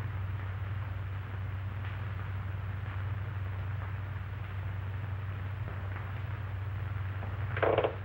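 Steady low hum and hiss of an old optical film soundtrack, with one short, louder sound near the end.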